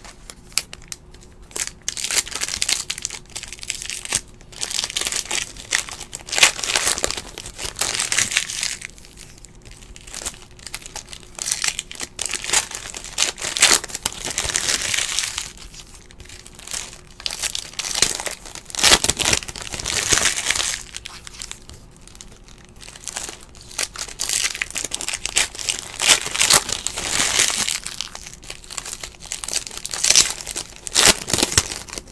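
Foil trading-card pack wrappers being torn open and crinkled by hand, in bouts of a few seconds with short quieter gaps between.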